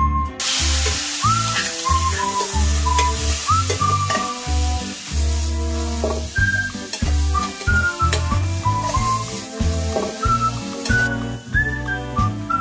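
Chili, garlic and coriander root sizzling in hot oil in a pan. The sizzle starts suddenly just after the start and drops away near the end. Background music with a whistled melody and steady bass plays throughout.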